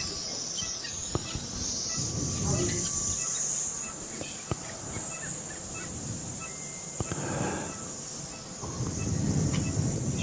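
Steady high-pitched hiss with faint, muffled voices now and then and a few short clicks.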